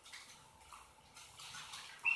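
Near silence with a few faint, scattered clicks of computer keys.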